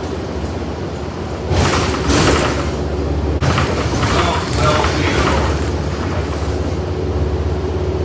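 Interior of a city transit bus on the move: a steady low drone of engine and road rumble. A louder surge of rattle and noise comes about a second and a half in.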